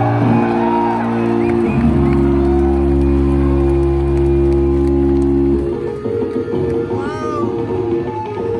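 Electric bass guitar played solo through a loud amplified rig: a sustained, ringing chord with deep low notes is held for over five seconds, then gives way to a quieter, busier run of notes. A brief high pitch glide sounds about seven seconds in.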